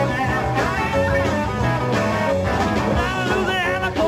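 A rock band playing jazz-influenced rock, with bass and drums under wavering melody notes.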